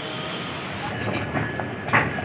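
Rajma curry bubbling at a boil in a steel kadai over a wood fire, a steady bubbling noise, with a short sharp knock near the end.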